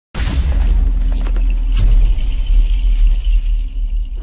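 Cinematic intro sting for a channel logo: a deep sustained rumble under a hissing swoosh, with a few sharp glitch clicks.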